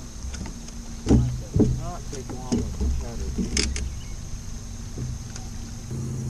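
Two heavy thumps on a bass boat's deck about a second in, then lighter knocks, over a steady low hum, with faint voices.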